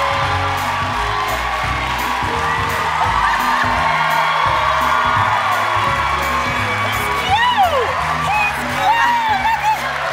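Music playing with a studio audience cheering over it, and high, gliding whoops and shrieks near the end.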